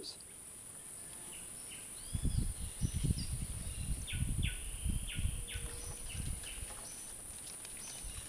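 Rainforest ambience: a steady high insect drone with short chirping bird calls, and from about two seconds in, irregular low rumbles and thumps.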